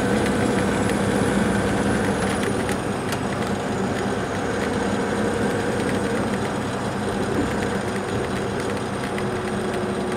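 Inside the cabin of an MCI D4505 coach at highway speed: the steady drone of its Cummins ISX diesel mixed with road and tyre noise. A faint high whine in the mix falls slightly about three seconds in.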